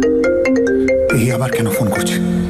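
Mobile phone ringtone playing a marimba-like melody of short, quickly fading notes, with a voice coming in about a second in.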